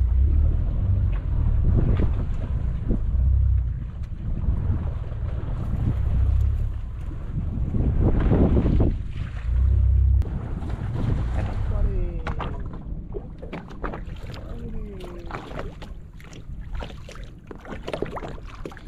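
Wind buffeting the microphone in heavy low gusts on an open fishing boat at sea, easing after about ten seconds, over the wash of the sea.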